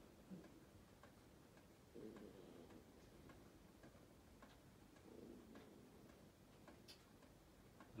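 Near silence: quiet room tone with faint, unevenly spaced ticks and two brief faint low murmurs, about two and five seconds in.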